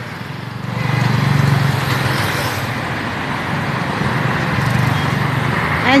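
Road traffic going by: a steady rush of engines and tyres, swelling about a second in and again near the end.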